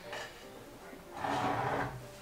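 A glass whiskey bottle scraping briefly against a wooden shelf as it is pulled down, a rushing scrape of under a second a little past the middle.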